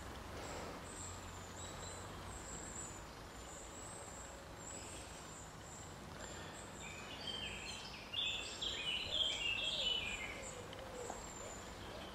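Faint woodland ambience, with a songbird singing a quick run of short notes for a few seconds in the second half.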